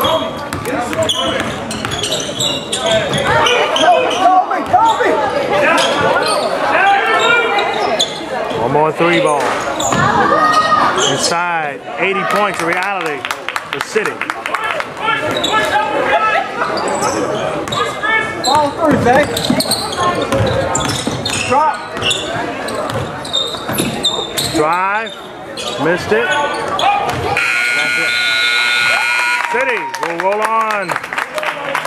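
Indoor basketball game: players calling out, a ball bouncing on the hardwood and sneakers squeaking as they run. Near the end, the scoreboard's end-of-game buzzer sounds for about three seconds as the clock hits zero.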